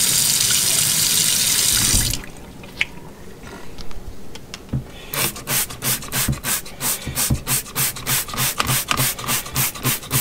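Kitchen faucet water running into a stainless steel sink and shut off about two seconds in. After a few small clicks, a fast, even run of short swishing strokes, about three a second, starts about halfway through.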